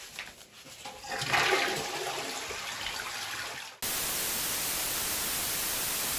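A toilet flushing, swelling about a second in and then fading. It is cut off abruptly by a steady static hiss that lasts about two and a half seconds.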